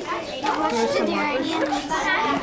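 Several children talking at once: overlapping chatter of young voices in a classroom.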